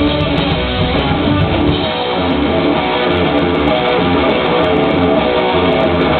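Live rock band playing an instrumental passage with no vocals: electric guitars strumming over bass and drums.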